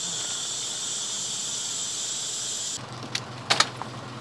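A steady high hiss cuts off sharply a little under three seconds in. A low steady engine hum and a few sharp metallic clacks follow, from an ambulance stretcher being loaded while the engine idles.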